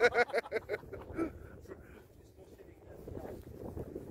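Voices and laughter for about the first second, then a low, steady rumble of wind on the microphone.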